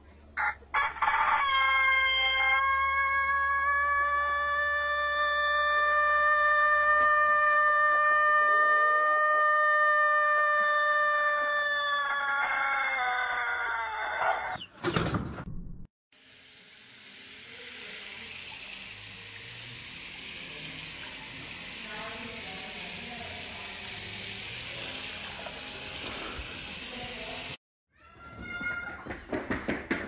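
A rooster crowing one extremely long crow, held at a steady pitch for about twelve seconds before dropping away. After a short break there is a steady hiss of a sink sprayer running water over a head of hair for about eleven seconds.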